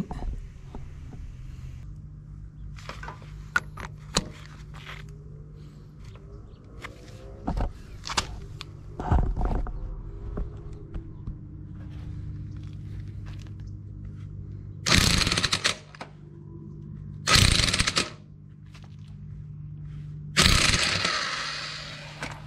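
Impact driver hammering in three bursts of about a second each in the last seven seconds, working loose a nut welded onto a snapped pipe-thread stub stuck in a log splitter's hydraulic control valve. Before that come scattered clanks and clicks of metal handling, over a steady low hum.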